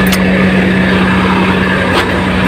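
Truck diesel engine idling with a steady hum, running to build up air-brake pressure. There is a brief click just after the start.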